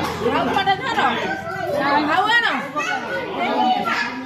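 Several people talking at once, their voices overlapping.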